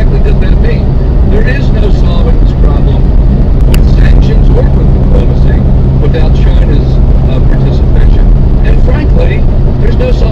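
Steady, loud drone of a moving vehicle's engine and road noise as heard inside the cab, with muffled, indistinct voices under it.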